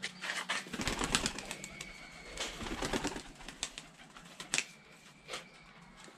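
Turkish tumbler pigeons being handled and flapping their wings: a quick flurry of rustling wingbeats in the first half, then a single flap or two near the end.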